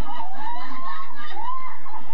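Teenage boys laughing, with a high voice sliding up and then arching down again.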